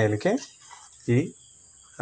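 Insects, such as crickets, keep up a steady high-pitched trill.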